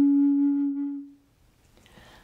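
A flute holding one long, low final note of a melody that fades out a little over a second in, leaving near silence.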